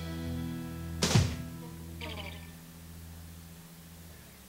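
A live band's final chord ringing out on guitar and bass and slowly fading, with one sharp, loud thump about a second in.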